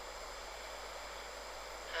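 Steady low background hiss in a pause between spoken phrases, with no distinct sound event.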